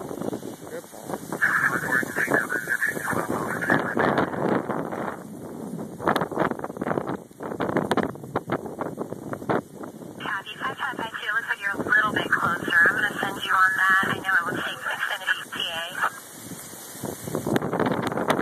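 Gusty dust-storm wind buffeting the microphone, rising and falling. A garbled voice over a police/fire scanner radio comes through on top of it, clearest from about ten to sixteen seconds in.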